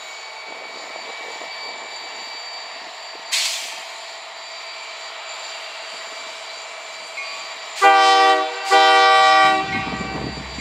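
Union Pacific SD70M diesel locomotive standing and idling, with a brief hiss of air about three seconds in. Near the end its air horn sounds two blasts of about a second each, the signal that the train is about to proceed.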